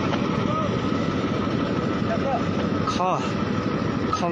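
A steady rumbling noise runs throughout, with a few short spoken words over it about half a second, two seconds and three seconds in.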